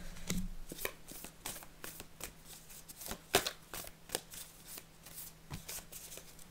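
Tarot cards being handled and laid out: a string of soft, irregular card clicks and slides as cards come off the deck, the sharpest about halfway through.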